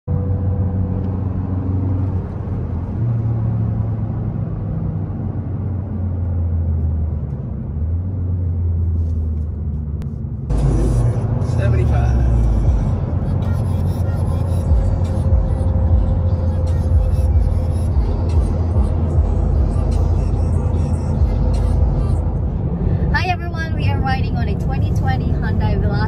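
Music with a low, stepping bass line for about the first ten seconds. Then a sudden change to louder driving noise from a moving car, heard inside the cabin. A voice comes in near the end.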